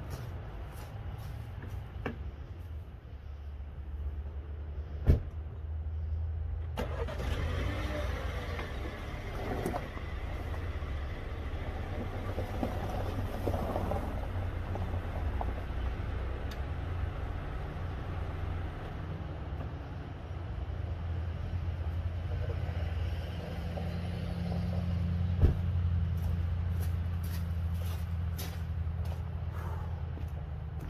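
A white BMW X1 SUV's engine starts about seven seconds in and then idles steadily. A sharp thump comes just before the start, and another near the end.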